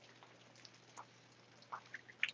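Near silence, with a few faint short ticks about a second in and near the end.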